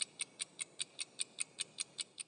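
Quiet, evenly spaced ticking from a logo sting sound effect, about five sharp, high ticks a second.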